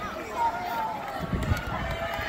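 Several spectators' voices talking and calling out over one another, no words made out, with a few low thumps on the microphone.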